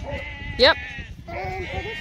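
Sheep bleating, several wavering calls one after another and overlapping, with fainter bleats from the rest of the flock behind.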